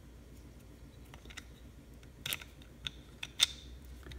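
A few small, sharp clicks and taps of metal servo-motor parts, the end housing and the resolver, being handled and fitted together, with the loudest click about three and a half seconds in, over a faint low hum.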